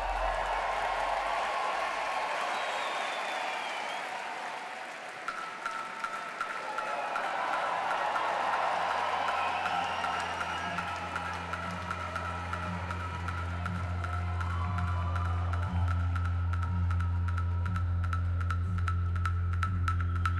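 Audience applause and cheering that thin out over the first several seconds while an electronic track fades in: a steady high synth tone enters about five seconds in over a deep bass drone, with ticking clicks growing denser toward the end.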